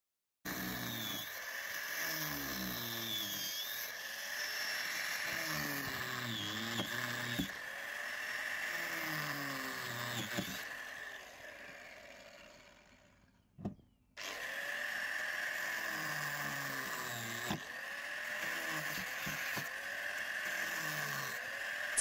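Angle grinder with a cutting disc running steadily as it cuts through the GRP (fibreglass) of a lifeboat's deck, with a constant high whine. About eleven seconds in it winds down and stops, then starts up again a second or so later and carries on cutting.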